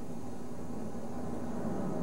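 A car driving slowly along a street: a steady low engine and road hum.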